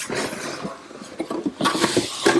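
Cardboard packaging sliding and rubbing as a large box lid is lifted off and the inner box drawn up, in two spells of scraping, the second near the end the louder.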